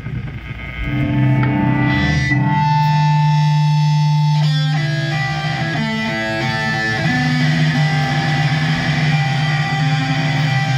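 A live rock band's electric guitars open a song, ringing out long held notes over a low sustained bass, with the notes changing about halfway through.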